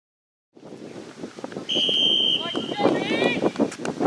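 Referee's whistle: one steady high blast of about half a second, about two seconds in. Then players shout across the pitch, over wind on the microphone.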